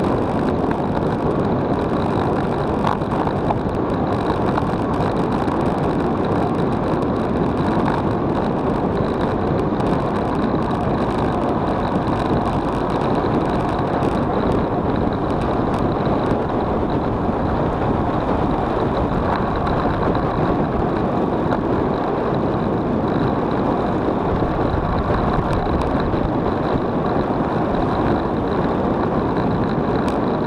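Steady rush of wind on the camera's microphone, mixed with tyre and road noise, from a road bicycle descending fast.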